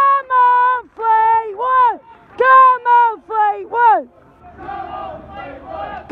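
A football supporter close to the microphone shouting encouragement in about eight loud, drawn-out yells over the first four seconds, then a low crowd murmur from the stand.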